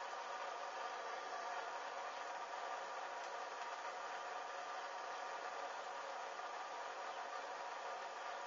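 Handheld gas blowtorch running with a steady hiss, its flame playing on a hanging object that is burning.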